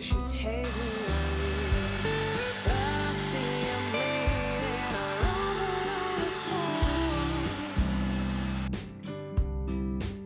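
Sharp cordless stick vacuum cleaner running as it is pushed across a hard floor: a steady motor and suction noise that stops about nine seconds in. A background song plays throughout.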